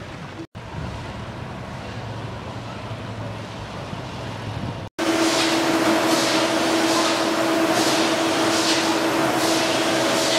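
Low, steady rumble, then after a cut about five seconds in, the loud steady hum of a hard-candy production line's machinery, with a hiss that comes about once a second.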